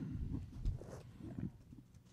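Low thuds and handling noise from hands and papers moving on a tabletop close to a desk microphone, with a sharper knock just after half a second in.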